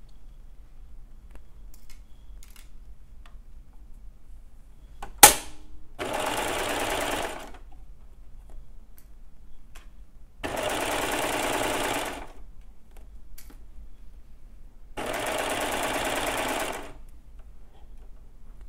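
Baby Lock serger sewing a three-thread overlock stitch along a seam of stretch swimsuit knit, in three short runs of about a second and a half each with pauses between. A single sharp click, the loudest sound, comes just before the first run.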